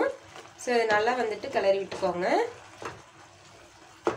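A woman speaks for about two seconds over the soft scraping of a wooden spatula stirring grated carrot halwa in a steel pan; after the talk only the faint stirring remains.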